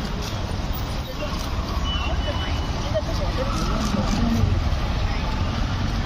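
Steady city road traffic, with vehicle engines rumbling low and passing cars and auto-rickshaws, under indistinct nearby voices.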